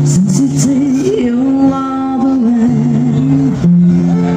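Live acoustic music from a duo: a voice sings a wavering melody over sustained guitar notes, and the chord changes near the end.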